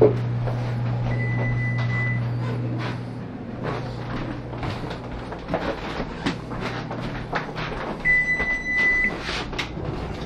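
Electronic oven timer beeping twice, each a single long, steady high beep, about seven seconds apart, signalling that the pizza is done. Under it runs a low steady hum that fades out about halfway, with scattered light knocks and clicks.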